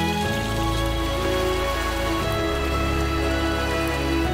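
Beef chunks sizzling in hot oil in a pan, a steady frying crackle, with soft background music of sustained notes over it.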